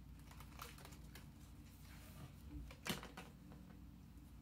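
Faint clicks and crinkles of a pop-up book's card pages being handled and turned, with one sharper snap about three seconds in.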